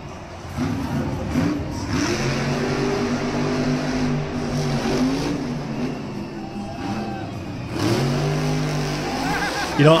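Monster truck engine revving hard and running at high revs, its pitch rising and falling as the truck drives and jumps. It comes in about half a second in and holds strong near the end.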